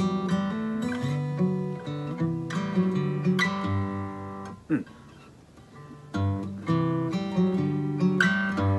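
Steel-string acoustic guitar played fingerstyle: bass notes and a picked melody together in a solo arrangement. The playing falls quiet for about a second and a half past the middle, then comes back in with stronger bass.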